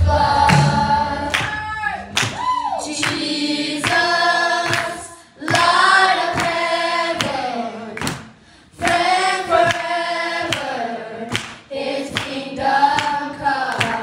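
A children's group singing a worship song together into microphones, in sung phrases with short breaths between them.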